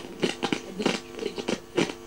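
Irregular crackling and scratchy clicks from a galena crystal radio's speaker as the detector contact is moved over the lead sulfide crystal to find a sensitive spot; the detector is touchy.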